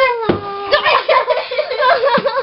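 A young girl's high-pitched wordless voice: a long, slightly falling squeal at the start, then quick quavering, laugh-like sounds.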